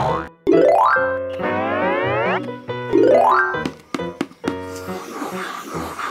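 Background music with cartoon sound effects: three rising pitched sweeps, the middle one the longest, then a hissing swell through the last second and a half.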